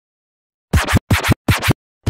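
DJ-style record scratching: three quick back-and-forth scratches, each a falling then rising sweep, starting about two-thirds of a second in after silence.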